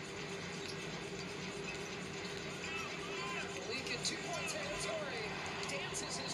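A basketball game broadcast playing at low volume: a commentator's voice over the steady background noise of the arena.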